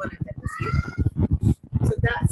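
A woman's low, creaky vocal sounds without clear words, with a brief high whine near the middle.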